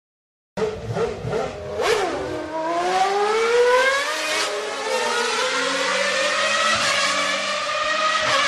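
Race-car engine sound effect played through a coin-operated kiddie ride car's speaker. A few clicks come near the start, then the engine note revs up over a couple of seconds and holds at a steady high pitch.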